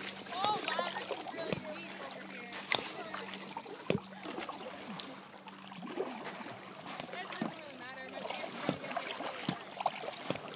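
Paddle strokes splashing and dripping in lake water close by, with occasional sharp knocks, under faint voices.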